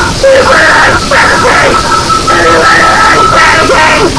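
Power-electronics noise music: a loud, dense wall of distorted noise with a steady high feedback whine running through it, and yelled distorted vocals.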